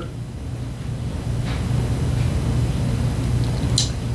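A steady low hum with a faint haze of noise, growing slightly louder, and a brief soft hiss near the end.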